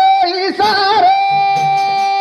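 A song: a high singing voice with wavering, ornamented phrases, then one long held note from about a second in, over light percussion.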